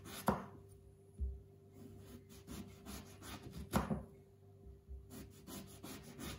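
A chef's knife slicing an eggplant into rounds on a wooden cutting board: soft cutting strokes, with two sharp knocks of the blade on the board, the first just after the start and the second a little before four seconds.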